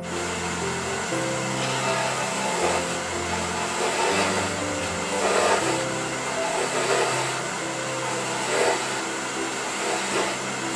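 Wood lathe running while a small chisel cuts the spinning wood of a thin turned finial, the cutting noise rising in short passes several times. Background music plays underneath.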